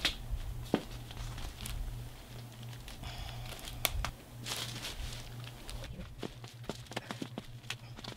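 Plastic drop cloth crinkling and rustling under hands as a bunched-up hoodie is squeezed together and bound with rubber bands, with a few sharp clicks, over a low steady hum.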